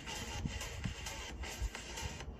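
Background music with a beat.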